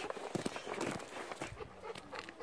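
Footsteps crunching on a gravel path, with scattered light knocks and one sharper knock about one and a half seconds in.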